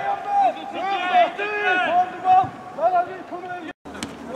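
Several voices shouting and calling out at once across a football pitch, loud and overlapping. The sound cuts out for a moment near the end.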